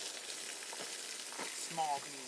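Dry wood-chip and straw mulch rustling and crackling as it is handled, with a couple of sharper crunches. A short voiced sound cuts in near the end.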